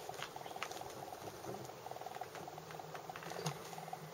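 Faint scratching and a few light clicks of a door latch and frame as a sticking glass-panelled door is pushed to get it to shut and latch. The latch is not catching properly.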